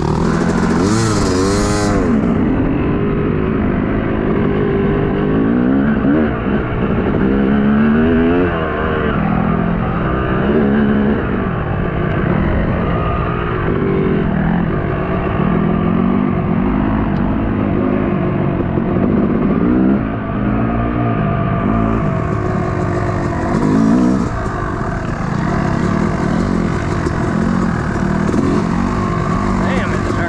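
Dirt bike engine ridden hard around a track, revving up and falling back over and over, its pitch rising and dropping every second or two as the throttle opens and closes.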